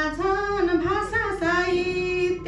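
A woman singing solo and unaccompanied into a microphone, her voice gliding between notes and then holding one long note near the end.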